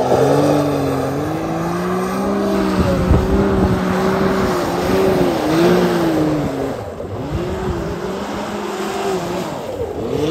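Can-Am Maverick X3 XRS side-by-side's turbocharged three-cylinder engine revving hard, its pitch rising and falling in waves and sagging a few times as the machine spins donuts on wet pavement. Over it is a hiss of tyres spinning through water.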